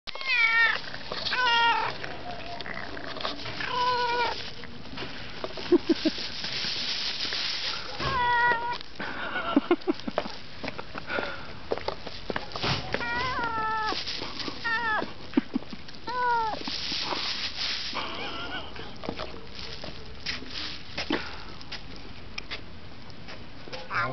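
Tortoiseshell cat giving about eight wavering, high-pitched growling meows, each under a second, while biting at a sausage held out to it. The calls are the angry mew of a hungry cat over food. Short clicks and rustles fall between them.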